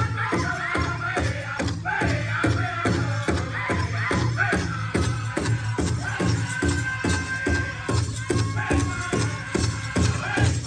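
Powwow drum group playing a Men's Traditional song: a large drum struck together in a steady, even beat, with the singers' voices carried high over it.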